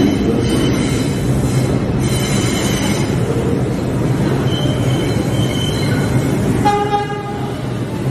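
Subway train approaching the station through the tunnel: a steady rumble of wheels on rails with thin, high squealing tones. A horn sounds near the end.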